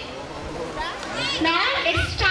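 Speech only: a girl's voice speaking, pausing briefly and resuming about a second in.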